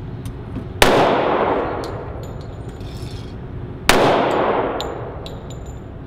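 Two handgun shots about three seconds apart, each echoing for about a second in an indoor range. Light metallic clinks of spent brass casings follow each shot.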